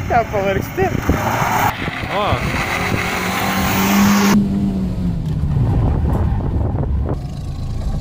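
Toyota Starlet hatchback's engine under throttle as the car drives past close by: the note rises to a peak about halfway through, then falls away. Wind buffets the microphone in the first half.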